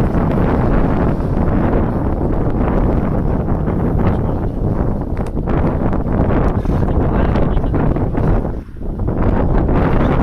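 Strong wind buffeting the microphone in a dense low rumble, with a brief lull near the end.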